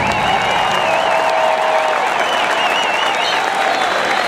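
Large stadium crowd applauding and cheering at the end of a marching band performance, with a warbling whistle rising and falling above the applause for about three seconds.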